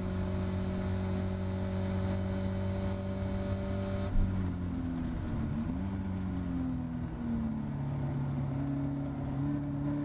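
Caterham Seven race car engine heard from on board, running steadily at high revs on a straight. About four seconds in, the throttle comes off and the pitch drops and wavers in steps as the car slows for a corner. The engine then picks up again at lower revs, its pitch climbing slowly.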